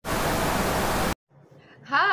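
A burst of hissing static-noise effect, about a second long, that cuts off suddenly.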